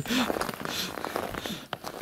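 Irregular crunching and rustling steps on frosty, straw-strewn ground, with a brief voice sound right at the start.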